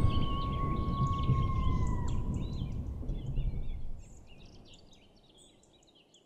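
Outdoor nature ambience: birds chirping over a low background rumble, with a long steady whistled tone that dips in pitch about two seconds in. It all fades out about four seconds in.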